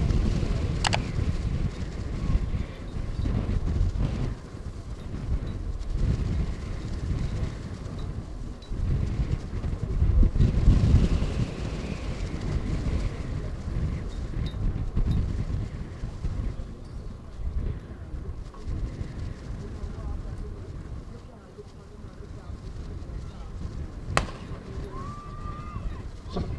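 Wind rumbling and buffeting on the microphone, gusting hardest about ten seconds in, while the hurdlers wait and settle into their blocks. Near the end a single sharp crack of the starter's pistol sets off the race.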